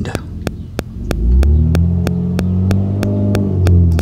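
A motor vehicle's exhaust with a loud, deep, steady drone that starts about a second in and keeps going, sounding like a ruined muffler.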